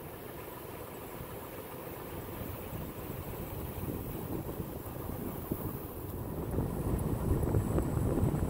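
Toyota 4Runner driving on a paved road, heard from inside the cabin: steady engine and road noise, growing a little louder near the end.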